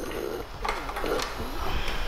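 Handling noise from an audio cable being picked up and moved: light rustling with a few short clicks.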